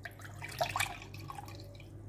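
Milk being poured from a glass into an empty glass mug, a quiet splashing of liquid into the glass.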